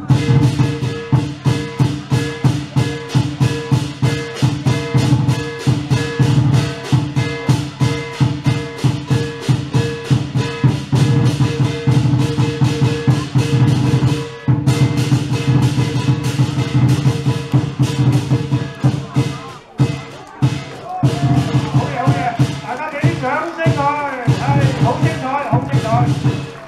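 Chinese lion dance percussion: a large lion drum beaten in a fast, steady rhythm, with clashing cymbals and gong ringing over it. It breaks off briefly about halfway through, then picks up again, and a man's voice is heard over it near the end.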